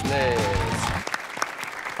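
Studio audience applause, heard plainly about a second in as a dense patter of many hands clapping after the last words of a man's voice.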